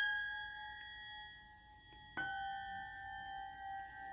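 A pair of hand-forged, tempered iron tingshas struck twice, about two seconds apart. Each strike gives a clear, bright, bell-like note that rings on with a long, slowly fading sustain.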